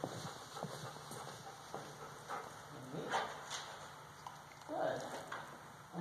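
Footsteps of a person walking across a hard hall floor, a step about every half second for the first three seconds or so, then a brief rising vocal sound about five seconds in.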